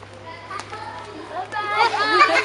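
A group of children's high voices calling out and shouting excitedly at once, faint at first and turning loud about a second and a half in.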